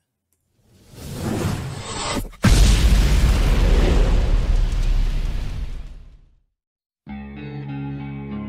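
Record-label logo sound effect at the start of a music video: a rising whoosh, then a sudden loud deep boom that fades away over about four seconds. After a short silence, the song's opening music with held notes begins near the end.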